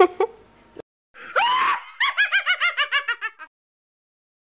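A girl's brief laugh, then after a cut a rising shriek and a high, rapid cackling laugh of about nine falling 'heh' notes a second that fades out: a spooky Halloween scream-and-cackle sound effect.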